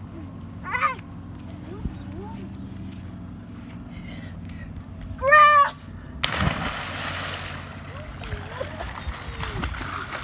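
A child's short, loud high shout, then about a second later a boy's body hitting lake water: a sudden splash followed by steady hissing, churning water.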